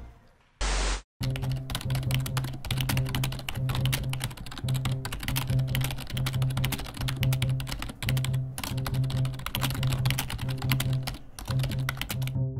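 Rapid keyboard typing sound effect, dense keystrokes throughout, set over background music with a pulsing low bass note. A short burst of noise comes about half a second in, just before the typing and music start.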